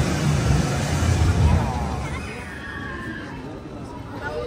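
A Crush's Coaster car rumbling along its track and fading away into the cave about halfway through, with people's voices over it. Quieter voices of people nearby follow.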